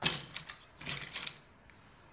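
Plastic bottle caps clicking and rattling against one another as a hand picks through a pile of them, in two short bursts.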